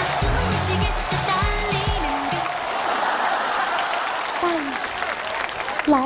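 Upbeat music with a steady bass beat that stops about two seconds in, over studio-audience applause that carries on, with a few scattered voices.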